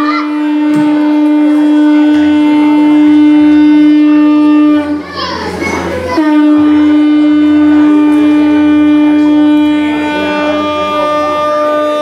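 A conch shell (shankha) blown in long, steady, loud notes. One blast lasts about five seconds, there is a brief break for breath about five seconds in, then a second blast of about six seconds.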